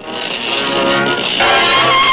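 Cartoon background music of sustained chords, moving to a new, higher chord about one and a half seconds in.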